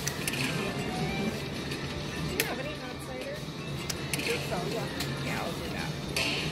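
Eyes of Fortune (Lightning Link) slot machine in its hold-and-spin bonus, playing electronic tones and short gliding jingles as the reels respin. Underneath is casino-floor noise: a steady hum, a murmur of voices and a few sharp clicks.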